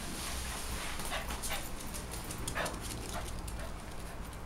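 West Highland terrier barking a few short times, agitated after spotting a cat.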